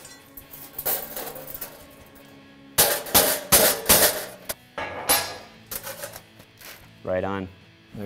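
Body hammer striking thin TIG-welded sheet steel over a dolly, flattening the seam to take out heat warpage. There are several sharp metallic blows at uneven spacing, most of them in the middle, each ringing briefly.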